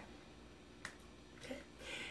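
A quiet room with a single sharp click about a second in, then a soft breath near the end.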